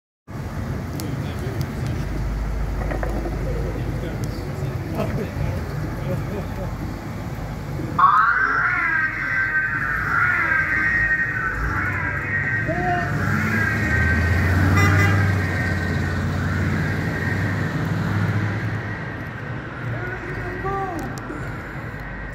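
Ghostbusters Ecto-1 replica car driving off with a low engine rumble. About eight seconds in its siren starts with a rising wail, holds a high wavering tone for about ten seconds, then fades as the car goes away.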